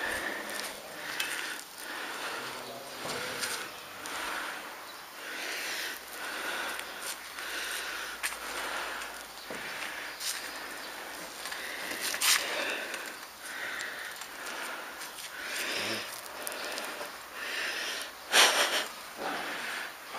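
A person breathing hard and rhythmically, about one breath a second, from the exertion of climbing a ladder. A few short knocks, the loudest about twelve seconds in, fit hands and boots on the metal rungs.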